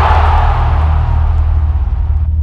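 Loud cinematic logo-intro sound effect: a deep, steady low rumble under a rushing swell that slowly fades, the drawn-out tail of a heavy impact hit.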